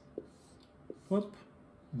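Mostly quiet room. A whiteboard marker is drawn across a whiteboard, giving two faint short strokes, and a man makes a brief vocal sound about a second in.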